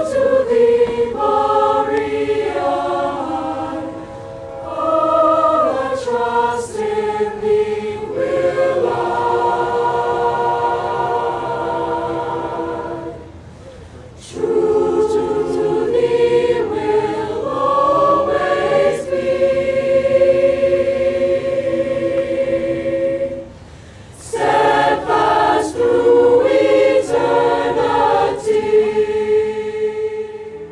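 Background music: a choir singing in long, sustained phrases, pausing briefly twice.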